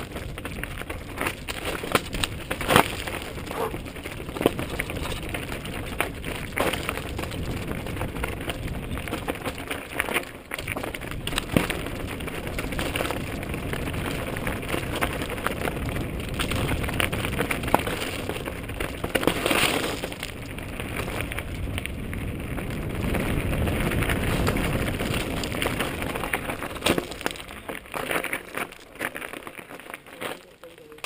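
Mountain bike rolling downhill over a rocky, gravelly dirt trail: tyres crunching on loose stones and the bike rattling over bumps, with sharp knocks throughout.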